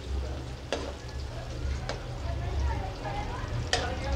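Sliced onions sizzling in hot oil in a kadhai as they start to turn brown. A metal slotted spatula scrapes and knocks the pan three times as they are stirred.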